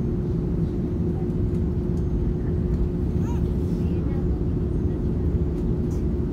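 Cabin noise inside an Airbus A330neo taxiing: the Rolls-Royce Trent 7000 engines and airframe make a steady low rumble with a constant hum, level and unchanging throughout.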